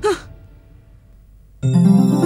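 A brief sigh-like vocal sound right at the start, then a short lull. Film background music of sustained electronic keyboard chords comes in suddenly near the end.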